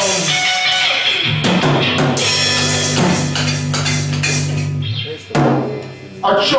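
Live rock band playing: drum kit and electric guitar over a held low note, ending on one last loud hit about five seconds in.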